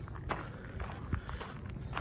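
Footsteps on stony ground: a few uneven steps with light scuffs.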